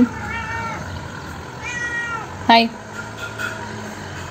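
Domestic cat meowing twice, two short calls about a second and a half apart.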